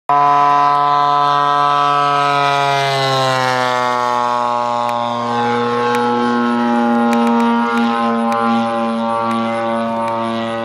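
RC model biplane's engine droning steadily in flight, its pitch dropping a few seconds in and then holding lower.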